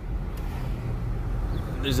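Car interior noise while driving: a steady low rumble of engine and road, heard from inside the cabin, with a low hum coming in about halfway through.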